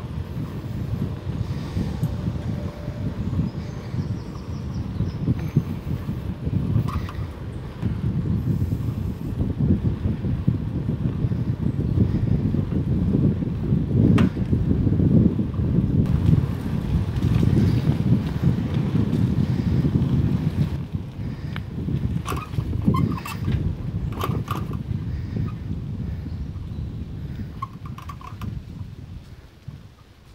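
Wind buffeting the microphone of a camera carried while riding a bicycle: a steady, low, gusting rumble, with a few short clicks in the second half. It dies down near the end.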